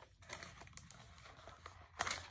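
Faint rustling and crinkling of paper with a few small clicks: a book's pages and a paper receipt kept inside it being handled.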